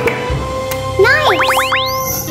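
Light background music, with an added cartoon sound effect about a second in: a quick run of several rising whistle-like pitch glides.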